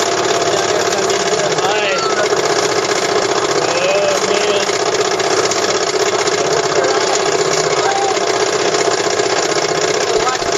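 A steel roller coaster's lift chain hauling the train up the lift hill: a loud, continuous mechanical rattle that holds steady throughout, with faint riders' voices over it now and then.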